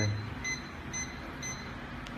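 Self-levelling laser level beeping just after being switched on: short, high, even beeps about twice a second. This is the alarm such levels give while outside their self-levelling range.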